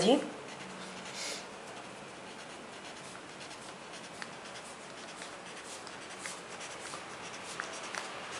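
Pencil drawing lines on a paper sewing pattern: faint, steady scratching of the lead across the paper.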